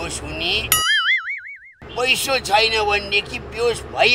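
Cartoon-style 'boing' comedy sound effect: a single wavering, wobbling tone about a second long, heard alone about a second in, with talk before and after it.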